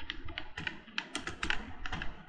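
Computer keyboard typing: a quick run of key clicks, several a second.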